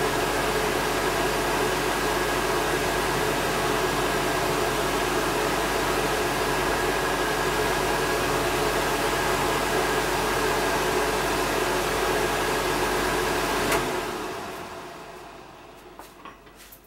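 Wall-mounted electric hot-air dryer blowing steadily, a fan rush with a constant motor hum, drying a bird's washed plumage. About fourteen seconds in it switches off with a small click and winds down, fading out over the last two seconds.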